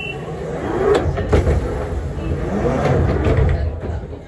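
London Underground Central Line train's sliding doors shutting with a couple of knocks about a second in, just after the door-closing tone stops, followed by a low rumble from the train that builds for the next few seconds.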